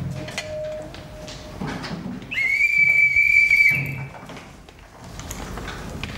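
A whistle blown in one long, steady, high note lasting nearly two seconds, starting about two seconds in. Faint knocks and shuffling sound around it.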